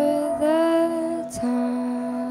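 A woman singing long held notes live into a microphone, with guitar accompaniment; a short break in the voice about a second in.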